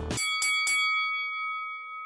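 Boxing-ring bell struck three times in quick succession, about a quarter second apart, its ringing tone fading slowly afterwards. Background music cuts off just as the bell begins.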